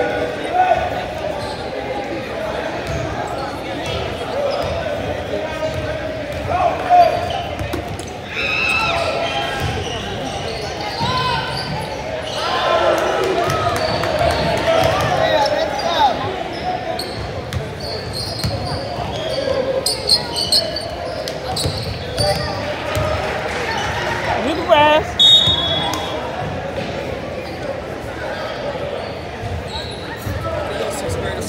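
Basketball bouncing and thudding on a gym's hardwood floor during play, with spectators' voices and shouts throughout, echoing in a large hall.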